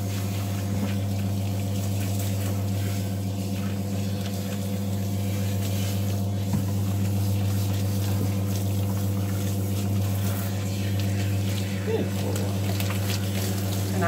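Electric recirculating bath pump running with a steady low hum, drawing diluted shampoo water up from the tub and spraying it through a hand-held nozzle onto a wet dog's coat.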